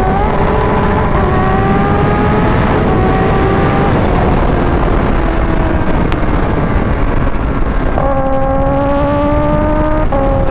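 Kawasaki Ninja H2's supercharged inline-four pulling hard at speed: the revs climb, drop at an upshift about three seconds in and climb again, ease off through the middle, then rise sharply once more near the end. Loud wind rush runs underneath the engine.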